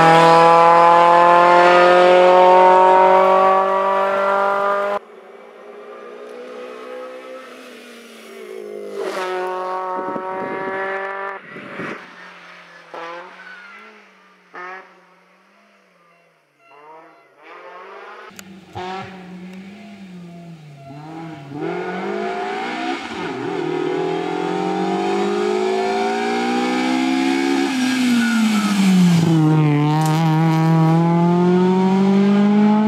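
Kia Picanto rally car's engine at full throttle, revs climbing as it pulls away. After a sudden drop, the engine is heard faint and distant, revs rising and falling through the gears, then grows louder as the car comes back into earshot, revving hard with a sharp drop in pitch at a gear change near the end.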